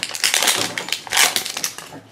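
Plastic wrapper band on a toy capsule egg being picked at and peeled off by hand, crinkling in a quick, irregular run of crackles.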